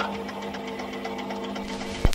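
Jukebox mechanism running after a coin is dropped in: a steady motor hum with rapid, even ticking as it selects a record.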